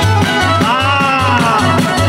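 Live band playing southern Italian folk music. A large jingled frame drum (tammorra) keeps the rhythm over a bass beat pulsing about three times a second, with accordion and guitars. A long sliding note rises and then falls about half a second in, lasting about a second.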